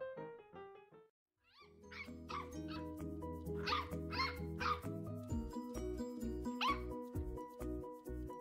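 Corgi puppy giving short, high yipping barks, about seven in three little bursts, over background music. Before them the piano music ends in a moment of silence about a second in.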